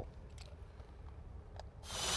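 Quiet background with a couple of faint clicks, then near the end a cordless drill starts up, drilling a quarter-inch pilot hole through vinyl siding into the wall framing for a lag bolt.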